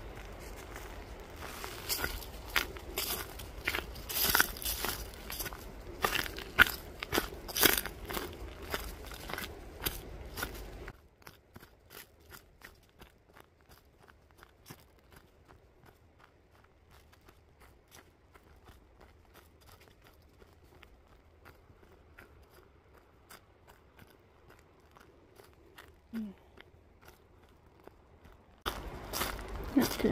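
Footsteps crunching on a forest trail's dirt, leaves and twigs for about the first eleven seconds. The sound then drops suddenly to near quiet with faint ticking, and the crunching returns shortly before the end.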